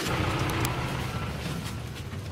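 A vehicle engine running at a steady low hum, with a rush of noise in the first second.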